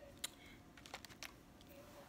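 A few faint, short clicks and taps of felt-tip markers being handled on a tabletop, the clearest about a quarter second in.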